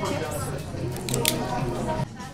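A woman talking over soft background music, with two quick crisp crackles a little over a second in.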